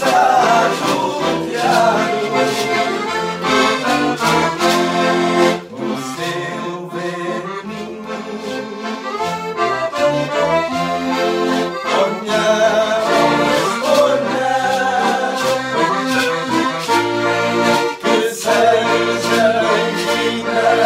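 Two accordions playing a traditional Portuguese folk dance tune, with shakers keeping a steady rhythm and voices singing along at times.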